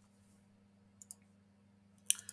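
Near silence broken by two quick computer mouse clicks, close together, about a second in.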